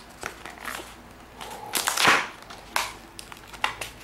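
Stiff clear plastic blister packaging on a cardboard backing being pried and flexed by hand, crackling and clicking irregularly, with the loudest crunch about two seconds in. The packaging is stubborn and resists opening.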